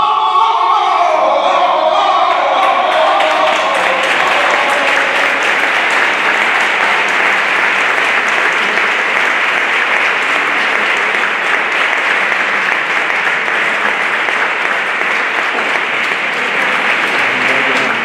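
A solo flamenco saeta's final sung note ends within the first couple of seconds, and an audience then applauds steadily for the rest.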